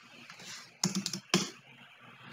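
Computer keyboard being typed on: a few sharp keystrokes about a second in, then one more shortly after.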